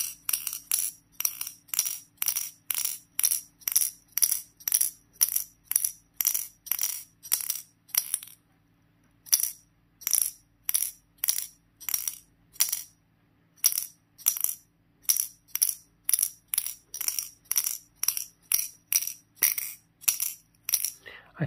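Steel ball bearing inside the Simboll dexterity puzzle clinking against its glass cover and polished metal cone as the puzzle is jolted by hand, about two to three sharp metallic knocks a second. The knocks stop for about a second around eight seconds in, then resume at the same pace.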